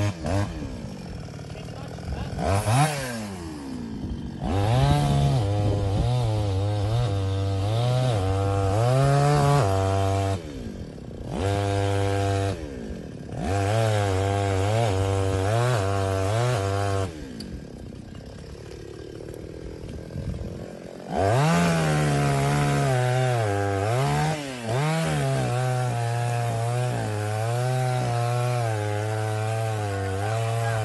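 Two-stroke chainsaw engine being started again, its pitch rising as it catches. It runs at speed in spells and cuts out a few times, then runs steadily through the last third. The operator takes the earlier failure to start as a flooded engine.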